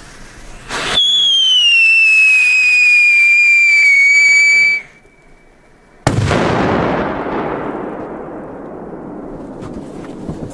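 A ground firework gives a loud whistle that slides slowly down in pitch for about four seconds and then cuts off. About a second later a large firecracker goes off with a sharp, very loud bang that fades away over several seconds.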